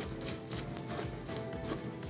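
Wooden spoon stirring a dry granola mix of oats and nuts in a stainless steel bowl: repeated scrapes and rustles, over soft background music.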